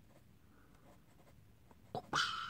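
Faint scratching of a pencil on paper as short arrows are drawn on a worksheet.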